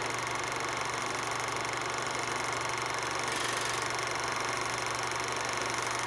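Vintage-film sound effect: steady hiss and fine crackle over a low hum, like old film running through a projector.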